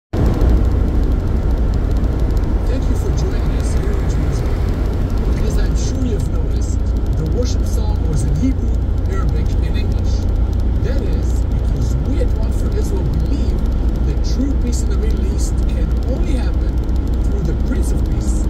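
Steady low rumble of a car's road and engine noise heard from inside the cabin while cruising on a highway.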